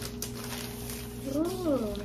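A clear plastic bag crinkles as a laptop is slid out of it. About a second and a half in comes a short voice-like call that rises and then falls in pitch, over a steady low hum.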